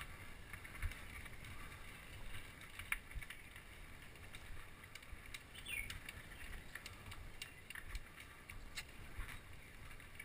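Faint riding noise of a mountain bike heard from a handlebar-mounted camera: tyres on a rough concrete track, with scattered clicks and rattles from the bike and two louder knocks in the first three seconds.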